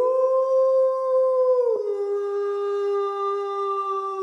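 A long pitched sound effect for a logo intro: one sustained note that swoops up and holds, then drops suddenly to a lower held note a little under two seconds in.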